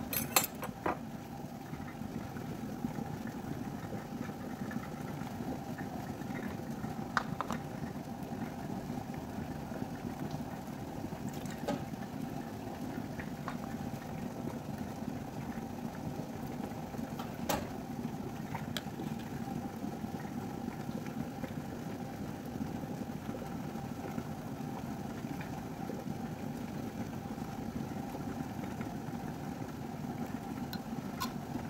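Glass canning jars, a canning funnel and a metal lid clinking a few times as jars of mandarin segments are filled and capped, over a steady low hum.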